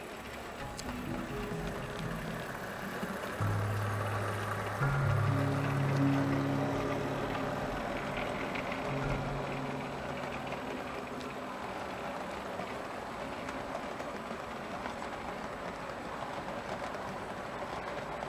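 Background music with slow held low notes that ends about two-thirds of the way through. Under and after it, the steady rolling noise of an HO scale model freight train of hopper cars running past close by on the track.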